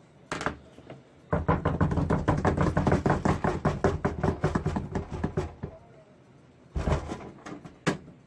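A drum roll tapped out by hand: rapid, fast-repeating knocks on a wooden surface lasting about four seconds, followed near the end by a short thud.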